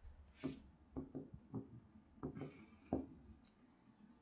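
A pen writing on an interactive smart board screen: faint, separate taps and short strokes of the tip, about a dozen of them.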